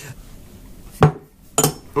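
A whisky tasting glass clinks sharply against a hard surface about a second in, followed half a second later by a second, shorter knock.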